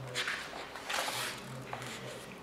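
Paper rustling as a large hardcover picture book's page is turned, in two soft swishes.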